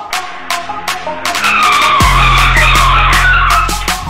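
Background music with a steady beat, and a screeching, tyre-squeal-like transition sound effect from about a second in until near the end, with a deep bass tone under it from halfway.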